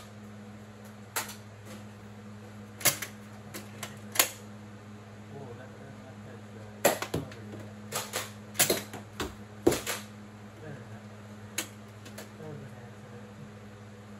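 Nerf foam-dart blasters firing and darts hitting furniture and cardboard: scattered sharp clicks and snaps, a few at first and a quicker cluster about seven to ten seconds in, over a steady low hum.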